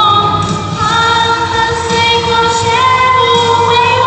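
A young woman singing a Mandarin pop song into a microphone over backing music, amplified through a hall's sound system, holding long notes that step between pitches.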